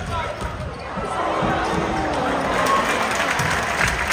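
Futsal ball being kicked and bouncing on an indoor hall floor, a few dull thuds, with players' voices calling out.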